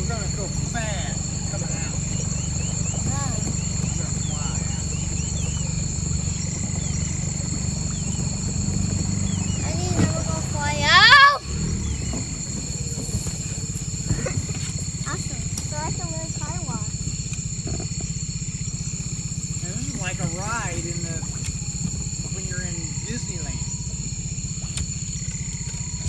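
Dinghy outboard motor running slowly at low throttle, a steady low drone, with steady high-pitched insect buzzing over it. About eleven seconds in, a brief loud rising voice cuts over the motor.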